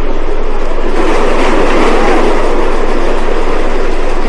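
Steady, loud noise of a subway train running through a station.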